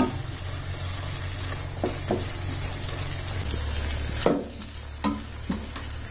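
Onion paste sizzling as it fries in mustard oil and ghee in a nonstick wok, stirred with a silicone spatula that scrapes across the pan several times at irregular intervals.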